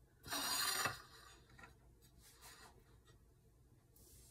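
A ceramic plate sliding across a granite countertop: one short scrape about half a second long, followed by a few faint softer rubs.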